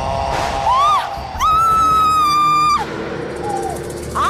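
A high woman's voice gives a short cry and then a long, steady scream lasting about a second and a half, over a dramatic background music bed.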